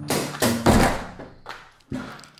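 A thump and a loud rush of rustling noise, then a sharp knock near the end, over the bass line of background music.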